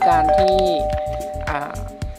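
Two-note ding-dong chime, doorbell-style: a higher note and then a lower one, both ringing on and slowly fading. It is the sound effect of an on-screen subscribe and notification-bell overlay.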